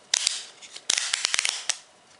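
Ratcheting belt clip on a plastic phone holster being turned, giving a quick run of sharp ratchet clicks about a second in, after brief handling noise at the start.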